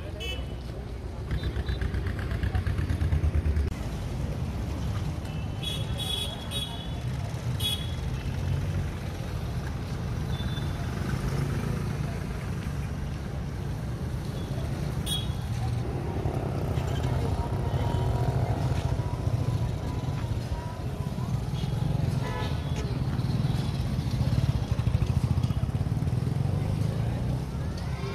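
Busy street traffic: motor vehicles and motorcycles running past under a continuous low rumble, with background voices of people nearby.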